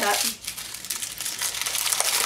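Tissue paper being crumpled up by hand, a continuous crinkling rustle.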